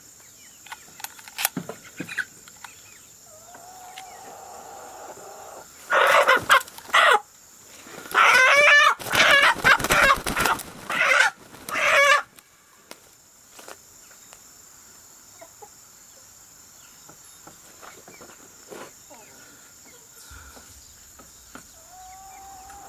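Slow-growing white broiler squawking in loud bursts, once about six seconds in and again over several seconds from about eight to twelve seconds in, as it is handled and weighed on a hanging scale.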